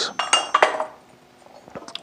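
A metal hand tool set into the slotted steel rack of a blacksmith's tong cart, clinking against the square-tubing bars: a quick cluster of knocks with a short metallic ring in the first half second, then a few light ticks near the end.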